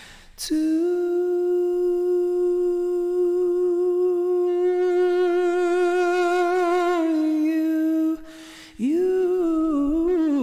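A man's voice holding one long sung note, hum-like, with vibrato coming in midway and a small step down about seven seconds in; after a breath, a new note slides upward near the end. The long note is a volume swell on a single pitch, an exercise in controlling loudness without stopping the sound.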